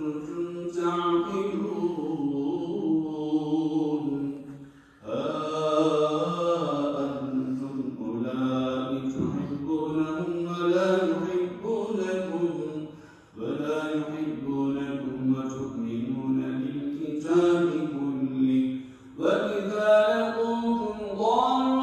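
A man reciting the Quran in Arabic in a melodic chanted style: long held phrases that glide up and down in pitch, broken by short pauses for breath about five, thirteen and nineteen seconds in.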